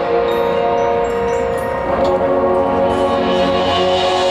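Marching band playing held chords, with a brief percussion hit and a change to a new chord about halfway through.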